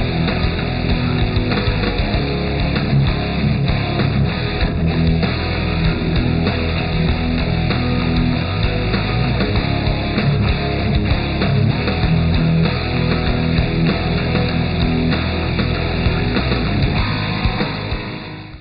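Hard rock music with a prominent bass guitar line and guitar, playing steadily and beginning to fade out near the end.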